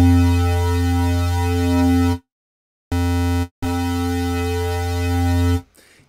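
Low synth bass played in the Vital software synth, a hollow distorted FM wavetable run through a chorus that gives it an alien sound. A long held note, a break of under a second, a short note, then another long held note at the same pitch.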